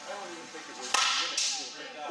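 A softball bat striking a pitched ball with one sharp crack about a second in, followed by a second sharp sound about half a second later.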